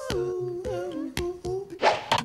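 A voice humming a short jingle tune for a comic news segment. Two sharp clicks fall about a second in and near the end.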